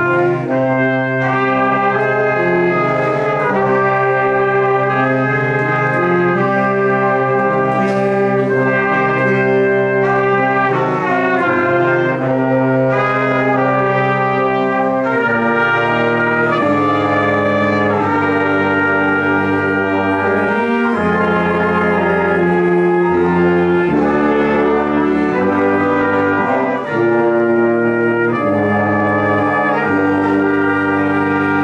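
Small brass ensemble playing a slow ensemble exercise in several parts: held chords that change every second or two, with no break.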